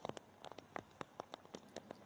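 Faint, irregular ticks of heavy raindrops striking a hard surface, several to the second.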